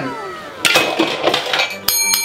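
Edited-in sound effects: a falling whistling glide, then about a second of clinking, crashing noise. Near the end a chrome desk service bell is struck once and keeps ringing.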